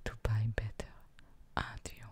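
Only speech: a woman's soft-spoken voice saying two short phrases.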